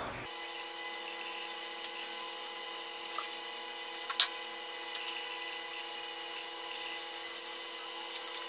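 Aerosol spray can of primer hissing in a long steady spray, with a couple of small ticks partway through.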